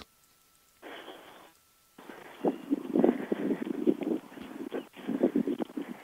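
A telephone line breaking up. Muffled, garbled sound from the far end of the call cuts in and out, dropping to silence several times.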